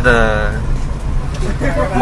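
Steady low rumble of a car's engine and tyres, heard from inside the cabin while the car drives along.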